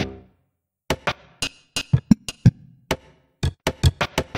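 Sampled hip-hop drum loops playing back together as an 8-bar pattern: short, dry hits and low kicks in an uneven, offbeat rhythm with brief gaps, sounding a bit funky.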